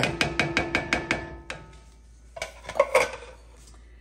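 Spatula scraping and knocking inside an emptied tin can, a quick run of about seven knocks a second with the can ringing, then a few more knocks about two and a half seconds in.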